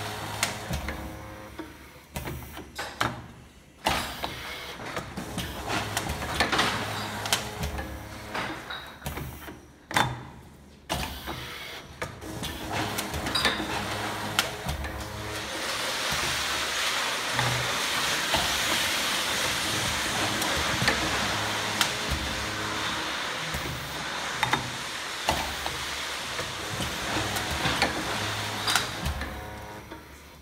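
Bottle labeling machine running through its cycle. Stepper motors spin the bottle and drive the label, making whines that change pitch, and the clamps and mechanism give sharp clicks and knocks. A steady hiss starts about halfway through and runs until near the end.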